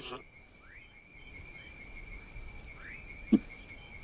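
Night insects trilling in a steady high chorus, with faint short chirps over it and one brief sharp click a little past three seconds in.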